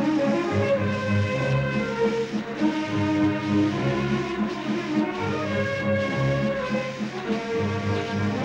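Orchestral film score: low brass holding long, sustained notes that shift slowly in pitch.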